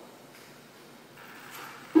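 Quiet indoor room noise with faint distant voices, the cars still waiting on the grid. Right at the end a steady electronic start tone cuts in suddenly, signalling the race start.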